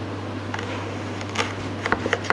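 A knife slicing a thin cutlet from a frozen fish bait on a plastic cutting board, with a few short sharp clicks as the blade meets the board or the hard bait, one about one and a half seconds in and a couple near the end, over a steady low hum.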